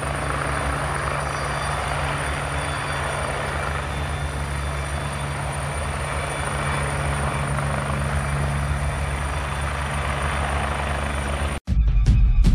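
A steady mechanical drone: a low hum with a faint high whine above it. It cuts in abruptly and cuts off suddenly near the end.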